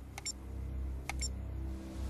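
Short electronic clicks from a computer interface, in pairs about once a second, as an on-screen parts list is paged through, over a low steady rumble.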